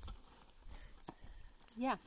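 A quiet pause with a few faint, isolated clicks, then a short spoken 'yeah' near the end.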